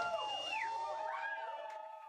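Lingering amplified tones that wail and swoop up and down in pitch, fading out steadily as a live rock song ends.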